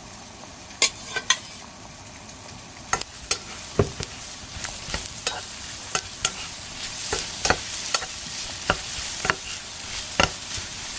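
Food frying in a pan, with a cooking utensil knocking and scraping against the pan at irregular moments from about a second in; the sizzle grows louder from about halfway through.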